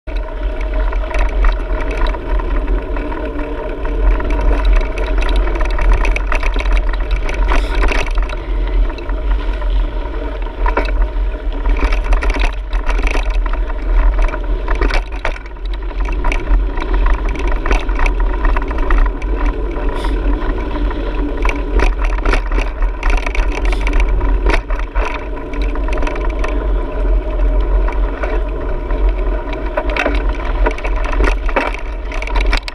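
Mountain bike rolling fast along a dirt trail, heard from a GoPro mounted on the bike: steady tyre rumble and wind buffeting on the microphone, with frequent small clicks and rattles from the bike and camera mount.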